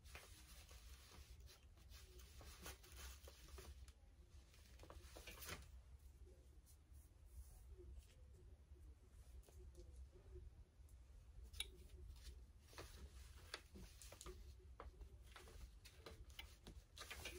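Near silence: faint rustling and scattered light clicks as plastic dress boning, fabric and paper pattern pieces are handled, over a low steady hum.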